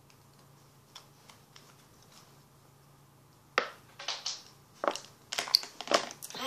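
Quiet room with a few faint clicks, then from about three and a half seconds in a run of loud, close rustling and knocking noises, as of someone moving right up against the microphone.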